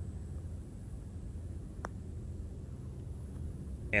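A putter striking a golf ball once, a single short click about two seconds in, over a steady low background rumble.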